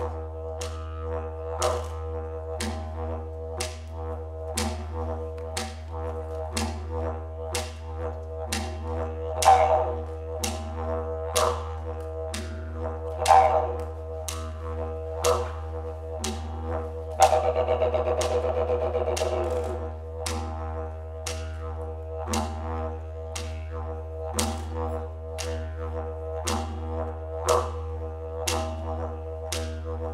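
Didgeridoo playing a continuous low drone over a steady beat of sharp taps, about three every two seconds. A little past halfway it swells for about three seconds into a louder, busier passage with wavering overtones, then settles back into the drone and beat.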